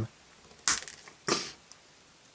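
Plastic nippers snipping through a hard plastic toy gun barrel: two sharp snaps a little over half a second apart, trimming the part off a bit at a time.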